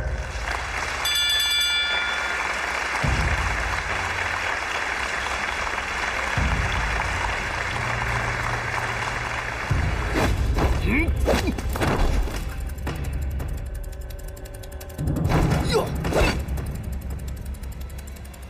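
Dramatic film score with low, heavy beats. Broad crowd noise fills the first few seconds, and there are short bursts of sharp sound partway through and again near the end.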